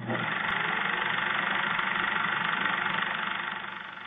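Film projector running: a steady mechanical whir with hiss, dull and lacking highs like an old optical soundtrack, fading out over the last second.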